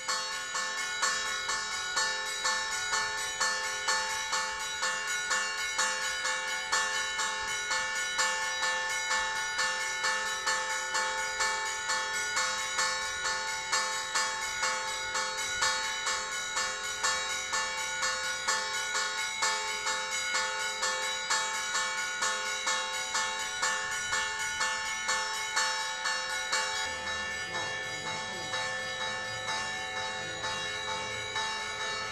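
Church bells ringing in a steady, rapid peal, about one and a half strokes a second, each stroke ringing on into the next.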